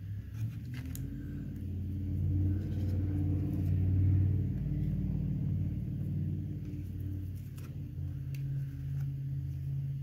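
A low, steady engine or motor rumble that swells over the first few seconds, peaks around the middle and eases slightly toward the end, with a few faint clicks on top.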